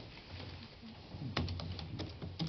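A few light, sharp clicks and taps starting about a second and a half in, over a low steady hum.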